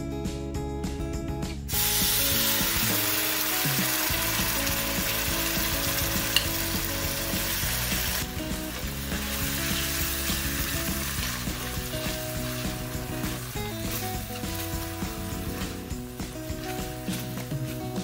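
Gochujang sauce frying in hot oil in a wok, sizzling. The sizzle starts suddenly about two seconds in, is loudest for the next several seconds, then eases, while a silicone spatula stirs it.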